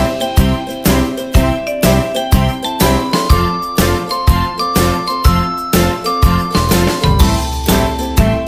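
Background music: a chiming, bell-like melody stepping between held notes over a steady beat.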